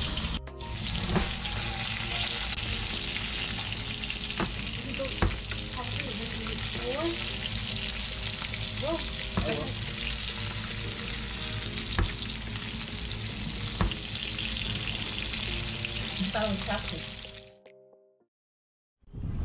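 Hamachi collar, salmon collar and salmon belly sizzling in oil in a stainless steel skillet: a steady frying hiss with a few light clicks, fading out near the end.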